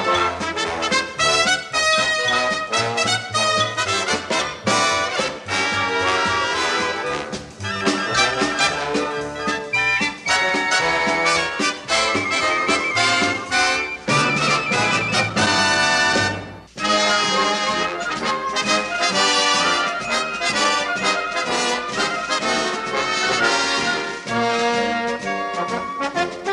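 Upbeat orchestral theme music led by brass, with trumpets and trombones to the fore, broken by a brief drop about sixteen seconds in.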